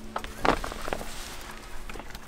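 A key clicking and scraping in a travel trailer's entry-door lock as it is worked to open an old, long-stored door: a few small sharp clicks, the loudest about half a second in.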